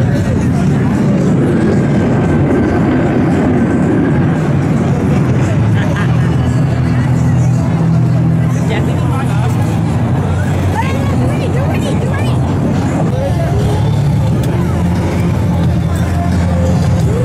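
Steady loud jet noise from the USAF Thunderbirds' F-16 fighters in flight, mixed with music and crowd voices.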